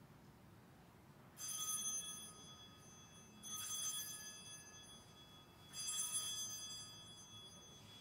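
Altar bells rung three times, about two seconds apart, each ring fading over about a second: the bells marking the elevation of the chalice after the consecration at Mass.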